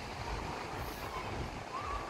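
Steady rushing of wind buffeting the microphone, over the wash of ocean surf.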